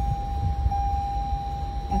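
A steady, high-pitched electronic tone held unbroken, over a low rumble.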